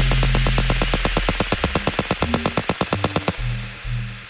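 Live electronic music from hardware synthesizers and drum machines: a fast, stuttering run of noisy percussive hits over a low bass drone, growing quieter. It cuts off suddenly a little after three seconds in, leaving a few low synth notes.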